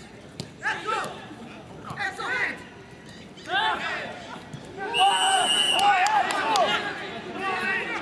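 Players and coaches shouting to each other across a football pitch during a training scrimmage, in short calls, loudest about five to seven seconds in. A short, steady whistle blast sounds about five seconds in, under the shouting, and a few sharp knocks come between the calls.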